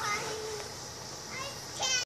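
A young child's voice calling out wordlessly: a drawn-out high call at the start, a shorter one later, and a brief high squeal near the end.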